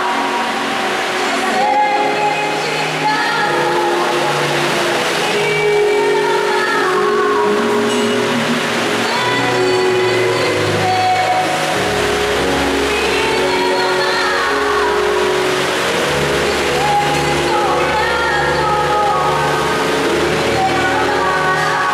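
A woman singing a gospel solo into a microphone over instrumental accompaniment. Deeper bass notes join about twelve seconds in.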